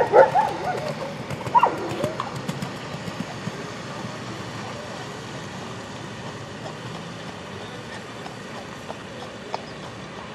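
Hoofbeats of a horse cantering on sand arena footing, over steady outdoor background noise. Near the start, two short pitched calls about a second and a half apart stand out as the loudest sounds.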